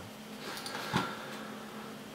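Quiet room tone with a faint steady hum, and one short soft click about a second in.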